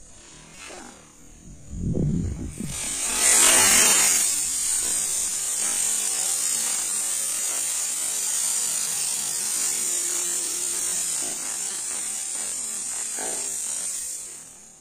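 A 'drone' firework ignites and lifts off, its spark-spraying charge giving a loud, steady hissing whir that is loudest at lift-off and runs on for about eleven seconds while it hovers, dying away near the end.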